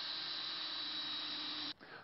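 Cordless drill driving a screw into a wooden stair tread: a steady whir under load that cuts off shortly before the end.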